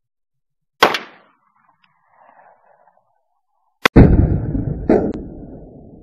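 Taurus 856 .38 Special revolver being fired: one sharp shot about a second in, then more shots close together from about four seconds in. Each shot is a loud crack, and the sound trails off slowly after the last ones.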